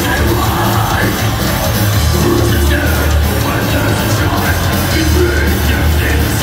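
Death metal band playing live, loud and dense: heavily distorted electric guitars, bass and drums.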